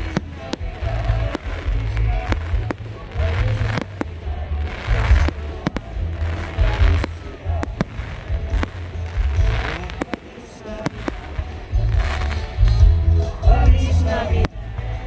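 Fireworks going off overhead: irregular sharp bangs and crackles, roughly one a second, with low booms under them. Music plays underneath throughout.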